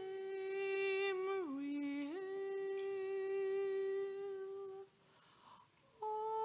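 A single voice holds a slow hymn melody in long notes. It slides down to a lower note about a second and a half in, glides back up and holds, then breaks off for a breath near the end.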